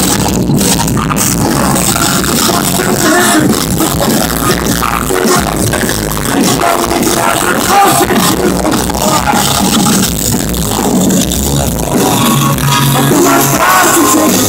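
Pop-punk band playing live on electric guitars and drums, loud and continuous, recorded from within the crowd.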